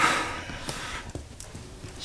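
A short breathy puff of air from a person, lasting about a second, then a quiet room with a few faint clicks.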